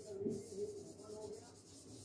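Marker pen writing on a whiteboard: a series of faint felt-tip strokes rubbing and squeaking across the board.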